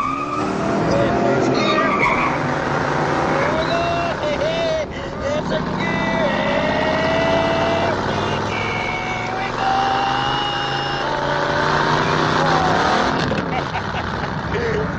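A car engine running under long, wavering tire squeals as the car skids.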